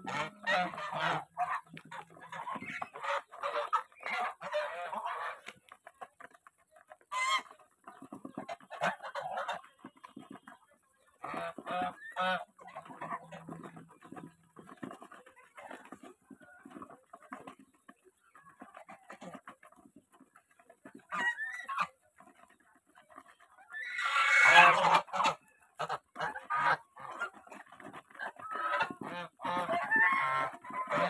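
A flock of domestic geese feeding together from a basin of grain: rapid pecking and bill clatter in the grain, with low chattering calls that come and go. A louder burst of honking comes about three-quarters of the way through.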